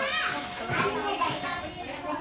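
Children's high-pitched voices chattering and calling out, with a rising call at the start.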